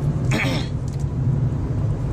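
Steady low rumble of a car's engine and road noise heard inside the moving car's cabin, with a short throat-clearing sound about half a second in.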